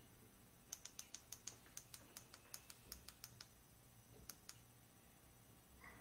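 Faint typing on a laptop keyboard: a quick run of about five keystrokes a second for two to three seconds, then two more clicks a second later.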